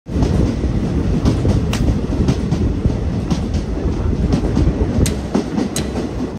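Passenger train running on its track, heard from inside a carriage at an open window: a steady heavy rumble with scattered sharp clicks of the wheels over rail joints.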